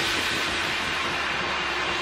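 Small DC motor spinning a plastic propeller on a homemade toy car: a steady whir with a steady hum that starts just after the beginning.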